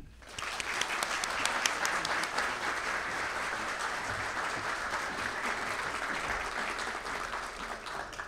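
Seated audience applauding, steady clapping from many hands that starts about half a second in and fades out near the end.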